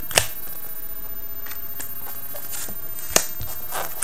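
Trading cards being handled on a playmat: cards picked up and placed with soft rustles, and two sharp clicks, one right at the start and one about three seconds in.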